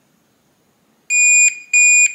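Reliabilt electronic deadbolt beeping after its reset button is held in with a pin: a moment of near silence, then about a second in a long high-pitched beep, with a second long beep starting near the end. These long beeps are the lock's signal that the factory reset is complete.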